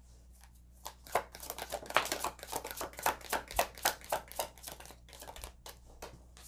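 A tarot deck being shuffled by hand: an irregular run of quick card snaps and taps, several a second, starting about a second in and thinning out near the end.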